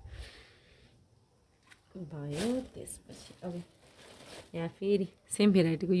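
A woman speaking in short phrases, with brief crinkling of a plastic bag as plants are lifted out of it.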